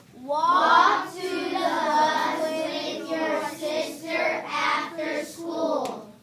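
A class of children singing a grammar jingle together in unison, a rhythmic chanted song.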